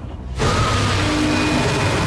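A loud, dense mechanical noise starts suddenly about half a second in and holds steady, with music under it.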